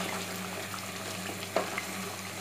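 Chicken curry masala with potatoes sizzling in a pot over high heat as it is stirred with a spatula, the sautéing (bhunai) stage. One sharp knock of the spatula against the pot comes about one and a half seconds in.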